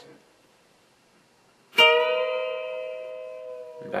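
Electric guitar, tuned down a half step, with two notes picked together at the twelfth fret of the high E and B strings about two seconds in. The B-string note is bent up and held as both ring out, then eased back down near the end.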